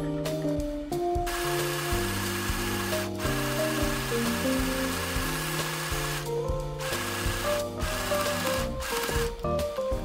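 Small white mini sewing machine running in spells as it stitches a seam in the top. It stops briefly about three seconds in and for a moment around six and a half seconds, then runs in shorter spells to near the end. Background music with a melody and bass plays underneath.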